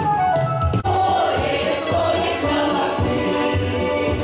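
Short burst of instrumental folk dance music, cut off sharply about a second in, then a mixed folk choir singing a Belarusian song with accordion accompaniment.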